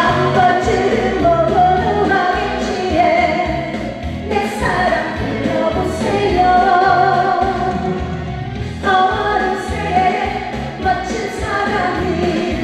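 A woman singing a Korean trot song over a backing track with a steady beat, in phrases with short breaths between them.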